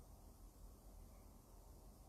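Near silence: faint, steady room tone with a light hiss.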